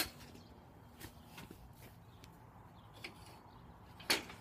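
A quiet stretch with a sharp click at the very start, then a few faint scattered ticks and knocks: handling noise from a phone being moved about while it records.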